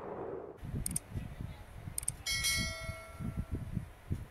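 Two short mouse-click sound effects, then a bright notification-bell ding of several tones that rings out over about a second: the stock sound of a YouTube subscribe-and-bell button animation.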